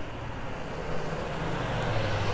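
Truck towing a trailer driving up the street: a steady low engine hum with road noise, growing louder as it approaches.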